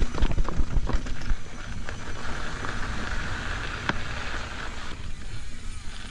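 Mountain bike on Michelin Wild Enduro tyres rolling over a dirt trail: a steady low rumble, with sharp rattles and knocks in the first couple of seconds, then a smoother stretch with a steady hiss and one more knock.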